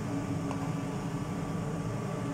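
A steady low machine hum, such as a fan or motor running, with one faint knock of a cleaver on a cutting board about half a second in.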